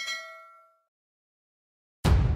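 Bell-like notification 'ding' sound effect, struck as the subscribe bell icon is clicked, ringing briefly and dying away within the first second.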